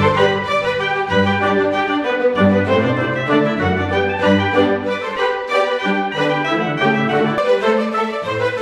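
Background instrumental music: a melody of changing notes over a low bass line.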